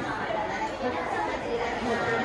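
Indistinct chatter of many people talking at once in a large indoor hall, the voices blurred together by the room's echo.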